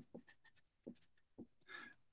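Felt-tip marker writing on paper: a few short, faint strokes over near silence.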